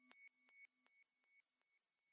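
Faint, fading tail of an electronic logo jingle: steady synthetic tones pulsing about five times a second, dying away to near silence.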